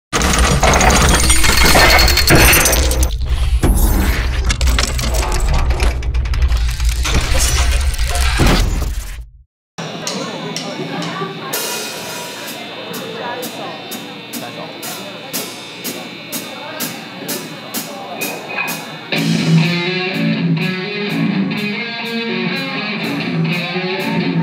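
A loud intro sound effect of many sharp hits over a deep low rumble, cutting off abruptly about nine seconds in. Then live-venue sound with a steady high tick about twice a second. A rock band with electric guitars and drums comes in loudly near the end.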